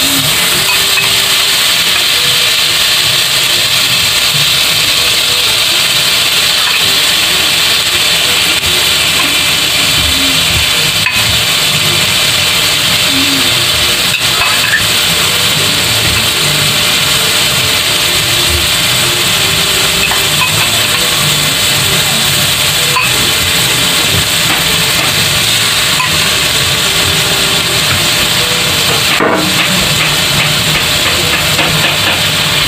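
Ground meat frying in oil in a steel wok: a steady, loud sizzle, with a few knocks of a metal spatula against the pan.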